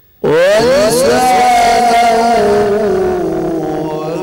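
A male Quran reciter's voice (qari) begins a phrase after a silent pause: it comes in suddenly and loudly, slides upward in pitch, then holds one long, slowly wavering note.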